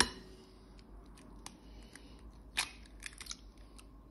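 Faint clicks and crackles of an eggshell being cracked and broken open over a glass bowl, the sharpest click about two and a half seconds in, with a few smaller crackles just after.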